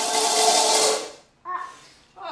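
Plate spinning and rattling on a tile floor after being dropped, with a steady ringing tone under the clatter, dying away about a second in.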